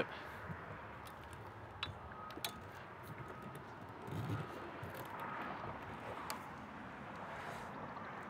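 Faint, scattered knocks and handling rustle from someone climbing an RV's metal rear ladder onto the roof, over a low steady hiss. There is a slight swell of noise about halfway through.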